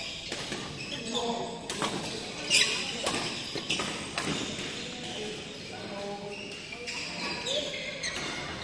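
Badminton rackets striking a shuttlecock in a doubles rally: sharp hits about every half second to second, the loudest about two and a half seconds in, echoing in a large hall.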